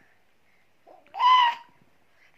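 A single short, high-pitched 'ooh' call from a voice about a second in, held at one pitch, after a near-quiet first second.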